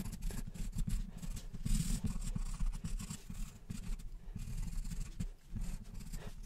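Charcoal pencil scratching on toned paper in quick, repeated hatching strokes.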